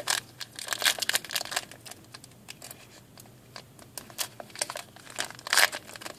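Foil Pokémon XY booster pack wrapper crinkling and tearing as it is pulled open by hand: scattered sharp crackles, loudest about half a second in and again near the end.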